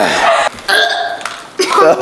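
A young man gagging and retching in short bursts after eating a foul-flavoured jelly bean, with voices around him.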